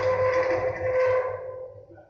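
Electric linear actuators of a stainless steel floor hatch running with a steady motor whine as they lower the hatch leaf, fading out about a second and a half in.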